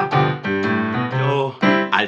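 Keyboard backing music with a piano sound, playing a short instrumental phrase of several notes that change about every half second.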